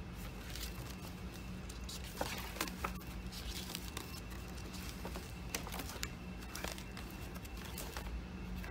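Pages of a glue book, a thick textbook with paper scraps glued onto its pages, being turned by hand: faint paper rustling with a few short soft ticks, over a low steady hum.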